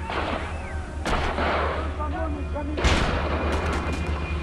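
Three heavy blasts of gunfire or artillery, about a second or more apart, the last and loudest near three seconds in, each trailing off. A steady low music drone runs underneath.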